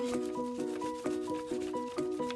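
Wax crayon rubbed back and forth over paper laid on a cardboard printing plate, a dry scratchy scraping in quick strokes. Plucked-string background music plays over it.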